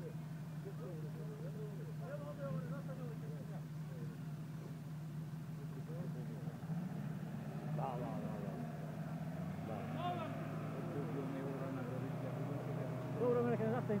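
Off-road 4x4 engine running with a steady low hum, with people talking in the background.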